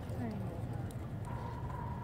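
Grey horse cantering on arena dirt: hoofbeats. A thin, steady high tone comes in a little past halfway.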